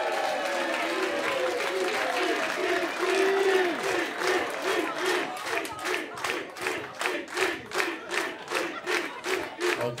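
A large audience shouting and cheering, then clapping in a steady rhythm, about two and a half claps a second, with voices shouting along in time.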